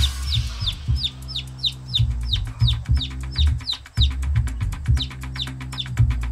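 Baby chick peeping: a steady series of short, high, falling peeps, about three a second, heard over background music with a pulsing bass line and ticking percussion.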